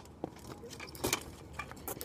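Kick scooters rolling on a concrete sidewalk, rattling, with a few sharp metallic clicks.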